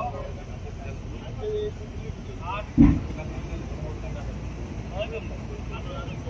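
Workers' voices calling and talking over a steady low rumble, with one loud thump a little before halfway through.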